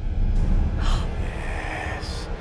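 A sharp gasping breath about a second in, over a low rumbling drone.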